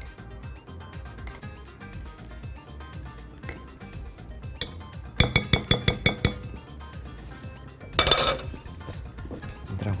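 A metal utensil clinking against a glass mixing bowl: a quick run of about nine ringing strikes in a second, about halfway through, then a rough scraping rasp of a whisk working a thick yogurt-and-tahini sauce in the bowl near the end. Background music plays throughout.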